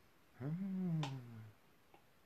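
A woman's wordless closed-mouth "mmm", about a second long, rising then falling in pitch, with a faint click near its end.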